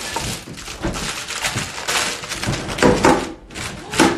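Baking paper rustling and crinkling as it is fitted over the base of a metal springform cake pan, with several knocks and clunks of the pan's base and ring against the board.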